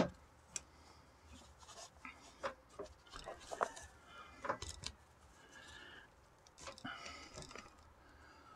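Faint rustling and rubbing of nylon paracord being pulled through the lacing of a deer-hide drum on a wooden frame, with a few light clicks and knocks scattered through.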